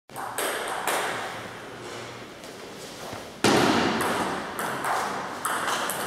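A table tennis ball clicking off bats and the table, sharp knocks that ring on in the hall. A few light clicks come at the start. About halfway a rally begins, with hits about twice a second, the first the loudest.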